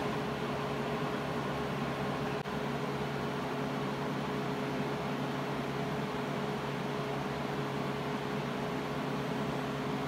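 Steady ventilation hum filling the room, with a few steady low tones under an even hiss.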